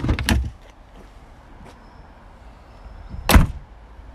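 An Audi A4 Avant's tailgate being shut, a single heavy thump about three seconds in.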